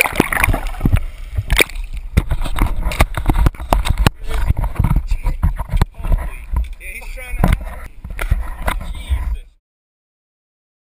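Sea water sloshing and gurgling around a GoPro camera's waterproof housing as it dips in and out of the surface, with many sharp knocks and a low rumble. The sound cuts off abruptly about half a second before the end.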